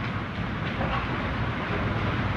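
A steady low rumble with a hiss above it, with no distinct events.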